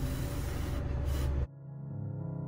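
Mouth blowing a steady stream of air over wet acrylic pour paint, heard as a rushing hiss with a low rumble. About a second and a half in it cuts off suddenly, and soft piano music takes over.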